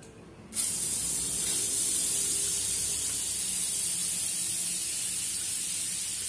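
Butter sizzling in a hot frying pan: a sudden, high-pitched hiss starts about half a second in as the butter hits the pan, then holds steady, easing slightly near the end.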